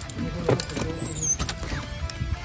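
A door handle and latch clicking twice as a door is opened, with a short high squeak just after a second in. Background music plays underneath.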